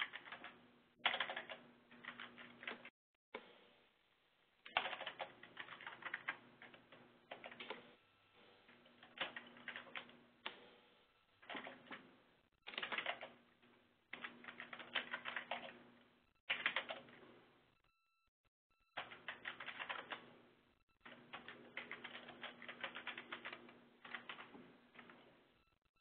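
Computer keyboard typing, faint: bursts of quick keystrokes lasting a second or two, separated by short pauses, as shell commands are entered.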